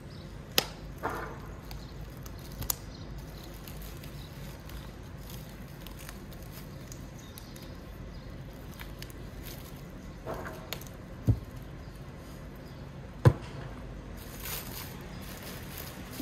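Gloved hands handling plastic stretch foil and adhesive tape while taping the foil wrap at the end of an inflatable packer: brief crinkling rustles of the foil, with a few sharp clicks, the loudest about 13 seconds in.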